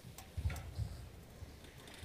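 Quiet room tone in a hall, with a few faint, soft low bumps and light clicks in the first second.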